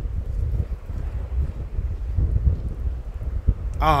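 Wind buffeting the microphone outdoors: a steady low rumble with no clear tone in it.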